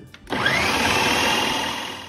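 Food processor motor starting about a third of a second in, its whine rising in pitch as the blade spins up, then running steadily as it grinds almond flour and powdered sugar together.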